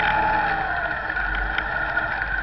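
Motorcycle engines running at low speed in a slow group ride, heard from a camera mounted on one of the bikes, with a steady low rumble and a steady high whine. A short pitched tone curves down and fades in the first second.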